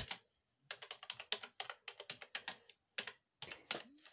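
Typing on a computer keyboard: a quick, irregular run of keystrokes that starts about a second in and stops shortly after three seconds.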